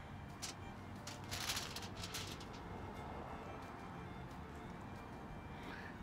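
Quiet background music, with a few soft rustles and clicks from hands handling the food, the largest about a second and a half in.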